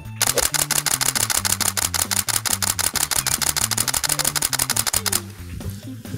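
Canon 70D DSLR shutter and mirror firing in a continuous burst, about seven shots a second, for about five seconds before stopping suddenly.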